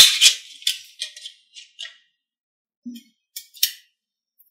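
Small magnetic balls clicking and rattling against each other as a column of them is snapped into place on a magnet-ball structure: a quick run of sharp clicks, the loudest at the very start, then a few more near the end.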